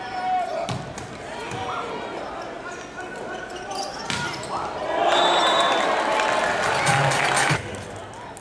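Volleyball being struck during a rally on an indoor court, a few sharp hits of the ball. Then a loud burst of crowd noise for about two and a half seconds, which cuts off suddenly near the end.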